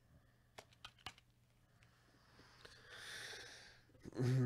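Very quiet room with a few faint computer keyboard clicks in the first second, then a soft rustling hiss that swells and fades near the end.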